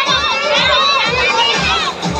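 Many children shouting and shrieking at once as they play on an inflatable slide. A steady music beat thumps underneath, about three beats a second.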